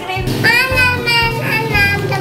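A child's singing voice over background music with a steady bass beat.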